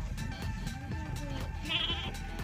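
A goat bleating once, briefly and with a wavering call, near the end, over background music with a steady beat.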